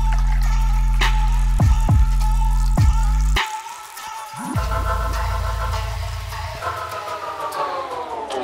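Electronic background music: a heavy bass line with a regular kick-drum beat that drops out about three and a half seconds in. A held chord follows whose pitch slowly sinks near the end.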